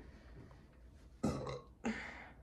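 A person burps once, short and low, about a second and a quarter in, after a quiet start.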